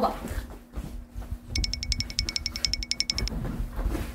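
A Siberian husky and a Shiba Inu tussling on a bed, with bedding rustling and soft thumps. In the middle comes a rapid run of evenly spaced, high, beeping ticks, about fourteen a second, for just under two seconds.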